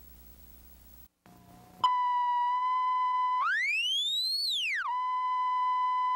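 A steady 1 kHz test tone, the reference tone that goes with television colour bars, begins suddenly about two seconds in after a moment of faint hum. Midway it glides smoothly up in pitch and back down over about a second and a half, then settles on the steady tone again.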